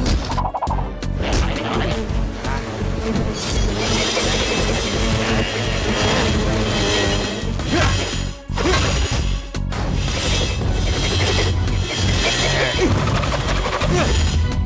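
Cartoon action-scene soundtrack: music with crash and impact sound effects, and brief dips in the sound about eight and a half and nine and a half seconds in.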